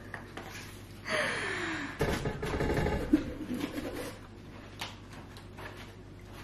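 A woman laughing breathily, followed by small clicks and rustles of a slice of pizza being picked up and handled.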